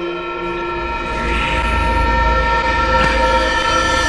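Horror film score: a sustained chord of several held tones, with a deep rumble swelling in about a second in and the whole growing louder.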